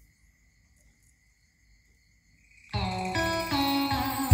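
Near silence with a faint steady high tone while the CD player spins up, then, a little under three seconds in, music suddenly starts playing from a CD through a Kenwood amplifier and speakers.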